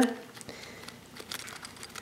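Faint rustling with a few light clicks as fingers handle the charms, beads and frayed fabric ties hanging from a canvas mini album.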